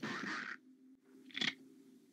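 Quiet horror-film soundtrack under a faint low hum: a soft hiss fades out about half a second in, and a short raspy croak comes about one and a half seconds in.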